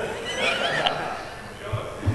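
Audience laughing, many voices together, fading out over about a second and a half.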